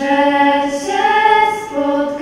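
Small group of young female singers singing a cappella, holding long notes; a new phrase starts at the beginning and the pitch moves to a new note about a second in.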